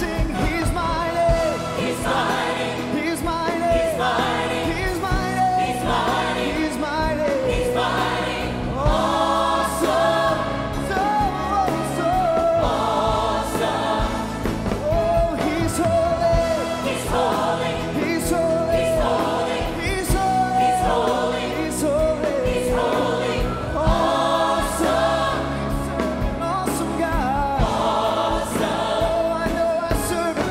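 Church choir and worship team singing a gospel praise song together, with instrumental backing carrying a bass line under the voices.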